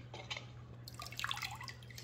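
Water sloshing and dripping in a stainless steel bowl as a hand moves a small diecast toy car through it and lifts it out.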